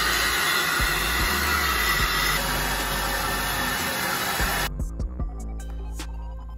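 Bathtub faucet running, a steady stream of water splashing onto the tub floor, which cuts off suddenly about three-quarters of the way in. Background music plays underneath.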